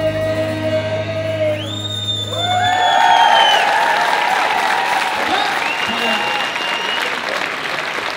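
A band's final acoustic-guitar chord and held note ring out and die away in the first two and a half seconds; from about a second and a half in, a crowd cheers, with long high-pitched screams over steady applause.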